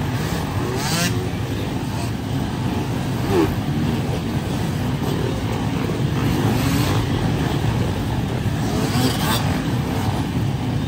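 A pack of enduro dirt bikes passing close by, many motorcycle engines running together in a dense, steady sound, with brief louder surges about a second in and near the end.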